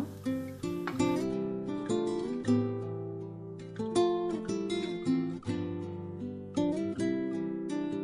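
Background music: an acoustic guitar playing a run of plucked notes and strums.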